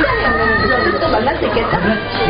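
People's voices talking over one another.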